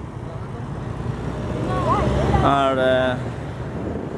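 Road traffic, with a car passing close by so that the rumble swells about halfway through and then eases.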